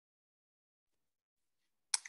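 Near silence, ended by one short click just before a voice comes in.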